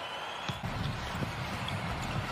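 Steady, fairly low background sound of a televised basketball game: court and arena ambience with no single clear event standing out.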